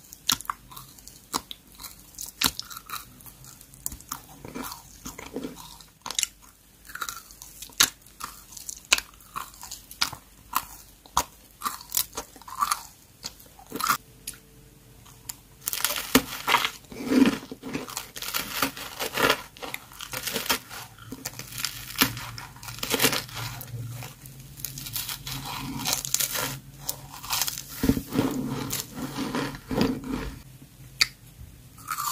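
Close-miked eating sounds: wet mouth clicks and chewing on sugar-coated sour candy belts, turning about halfway through into louder, denser crunching bites and chewing of other green foods.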